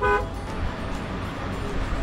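A short toot of a Ford pickup's horn at the very start, followed by the steady low rumble of the idling truck and street.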